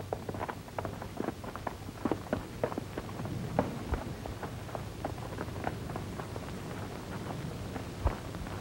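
Footsteps of several people walking, heard as irregular short steps several times a second over a low steady hum.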